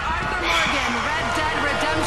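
A person speaking, with dull low knocks underneath.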